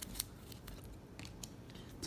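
A stack of glossy trading cards being shuffled through by hand, giving a few faint, sharp clicks and slides as cards are moved from the front of the stack to the back.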